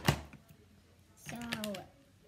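A sharp knock at the start, then about a second later a child's short wordless vocal sound that falls in pitch.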